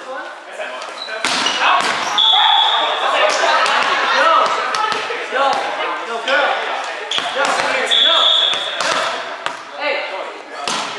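Indoor volleyball play in a reverberant gym: repeated thumps of the ball off players' arms and the floor, with players calling out. Two brief steady high-pitched tones sound, about two seconds in and again near eight seconds.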